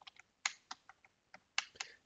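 Computer keyboard keys pressed in a short, uneven run of faint keystrokes.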